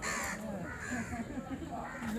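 A bird's harsh calls, loudest at the very start and then repeated about once a second, over a murmur of people's voices.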